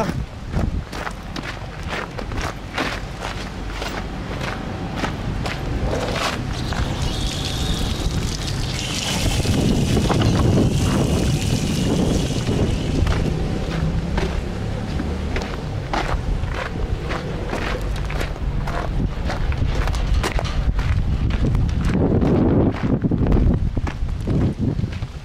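Footsteps crunching over gravel and dirt, with wind buffeting the microphone in a low rumble.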